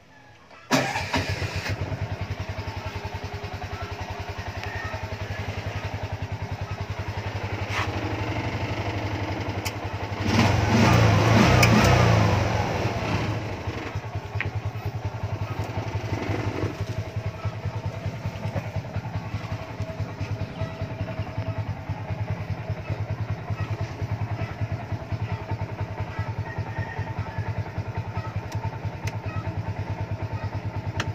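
TVS King auto-rickshaw's single-cylinder engine starting with its push-button starter, catching at once and idling with a steady, rapid pulse. About ten seconds in it is revved up for two or three seconds, rising in pitch, then drops back to idle.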